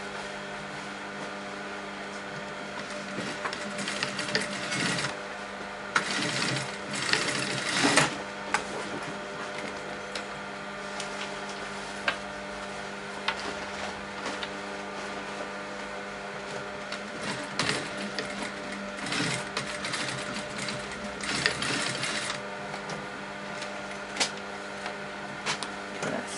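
Electric sewing machine top-stitching fabric in several runs of a second or two with pauses and a few clicks between, over a steady hum.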